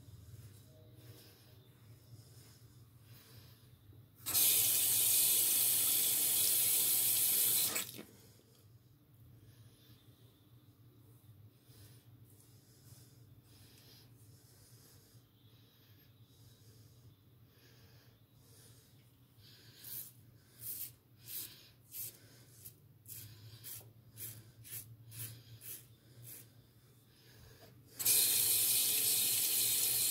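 Water from a tap running into a sink twice: once for about four seconds near the start, and again for the last two seconds. In between comes a run of about a dozen short, quick strokes of an Eclipse Red Ring safety razor cutting through stubble.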